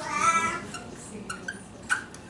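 Felt-tip marker squeaking on flip-chart paper while circles are drawn: one longer squeak at the start, then a few short squeaks near the end.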